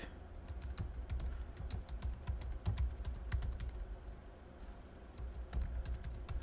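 Computer keyboard typing: a run of irregular key clicks, thinning out briefly about four seconds in before picking up again, over a low steady hum.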